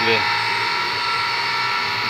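A motor running steadily in the background, a constant whine with several fixed tones over a low hum.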